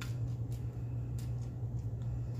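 A plastic slotted spoon spreading taco meat over a fried tortilla on a foil-lined tray, giving a few soft clicks and scrapes, over a steady low hum.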